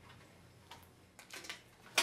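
Light metallic clicks and ticks as the sheet-metal retainer tabs on an LCD panel's frame are bent back by hand, a few scattered through the second half with the sharpest click at the very end.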